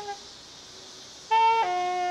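Solo saxophone playing a slow melody: a long held note ends, and after a pause of about a second a short higher note steps down into another long held note.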